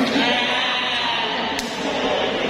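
Voices and general hubbub in a large hall, with a wavering, drawn-out voice sound in the first second and one sharp click about one and a half seconds in.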